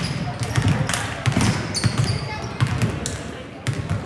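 Several basketballs bouncing on a hardwood gym floor in quick irregular knocks as players dribble and shoot, with a brief high sneaker squeak about two seconds in, all echoing in a large gym.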